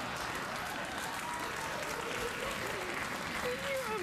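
Studio audience applauding, with a voice coming in near the end.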